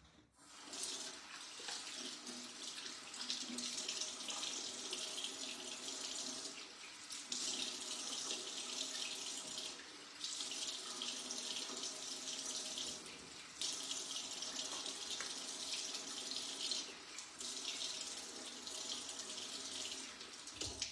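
Bathroom tap running as cleansing milk is rinsed off a face with water. The steady stream of water dips briefly about four times, every three to four seconds.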